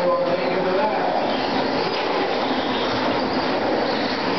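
Electric 2WD RC trucks racing on an indoor dirt track: a steady mix of motor whine and tyre noise from several trucks, with indistinct voices underneath.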